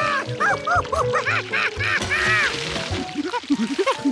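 Animated monkey character's alarmed chattering: a rapid run of short rising-and-falling hoots, higher at first and dropping lower near the end, over background music.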